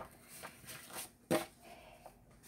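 Sheets of folded paper rustling as a stack is handled and lifted off a cutting mat, with one sharp tap about two-thirds of the way in.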